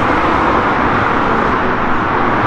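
Steady rushing noise with no distinct events, loudest in the middle range.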